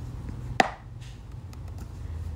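A single sharp tap of a hard object, knocked or set down about half a second in, with a brief ring after it, over a steady low hum.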